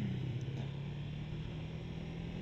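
1997 Kawasaki ZZR250's parallel-twin engine running at a steady note while the motorcycle is ridden, with road and wind noise.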